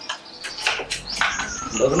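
Birds chirping in short, high calls. A low rumble joins about halfway through, and a man's voice starts near the end.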